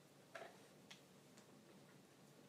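Near silence: quiet room tone with three faint, short clicks, irregularly spaced.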